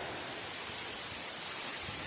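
Heavy rain falling steadily on the ground and leaves, an even hiss.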